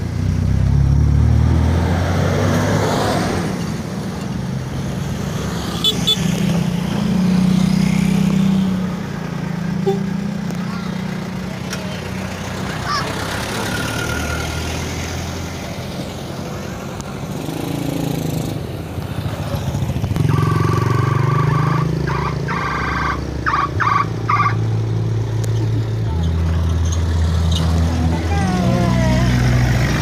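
Engines of a line of road vehicles (cars, a pickup truck and an open passenger minibus) driving past one after another, a low running drone that shifts in pitch and loudness as each vehicle comes by. Voices of passengers are heard now and then.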